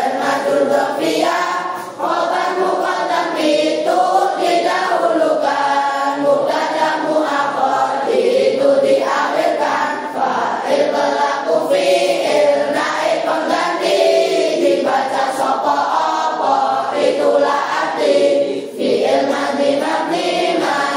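A large group of boys and girls singing Arabic nahwu grammar verses (nadzom) in unison to a simple tune, with brief dips between lines.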